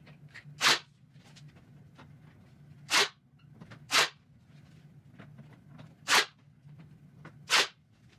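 Ryobi AirStrike cordless nailer firing five nails into a wooden edge strip, each shot a short sharp snap, spaced irregularly one to two seconds apart.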